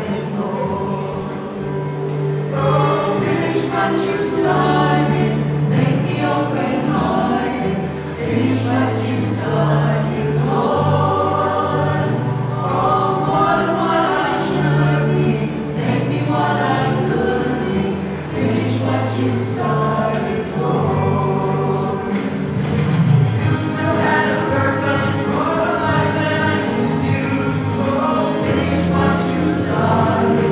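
A small choir singing a hymn with instrumental accompaniment, a sustained bass line moving in steady steps under the voices.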